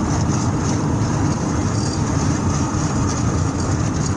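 Steady low road rumble heard inside an ambulance's cabin at highway speed: engine, tyre and wind noise, with no siren.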